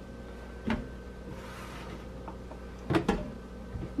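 Sliced mushrooms and hands knocking against the Instant Pot's stainless steel inner pot as handfuls are dropped in: one knock about a second in, then a quick cluster of knocks near the three-second mark, over a faint steady hum.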